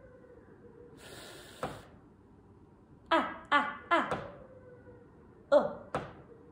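A woman voicing isolated phonics letter sounds: a drawn-out 'fff' hiss about a second in, then a short sound, then three quick repeated short syllables falling in pitch midway, and one more near the end.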